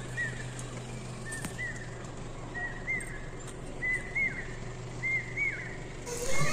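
A bird calling over and over: short rising-and-falling notes, mostly in pairs, about once a second, over a faint steady low hum.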